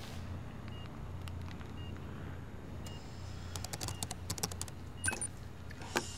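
Laptop keyboard typed on, a quick run of keystrokes starting about halfway through and ending with a couple of sharper key presses near the end, as a password is entered. Under it a steady low hum and faint short beeps about once a second.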